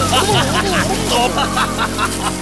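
A puppet character's voice crying out "oh, oh, oh" in a long wobbling wail, pitch swinging up and down, over a steady hiss of spraying water from a garden hose jet and a low steady hum.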